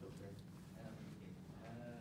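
Faint, drawn-out voice over the steady hum of a lecture room.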